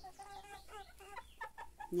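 Chickens clucking softly and faintly while foraging, a scatter of short low calls.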